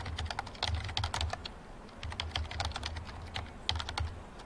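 Typing on a computer keyboard: quick, irregular key clicks in runs, with a brief pause about halfway through.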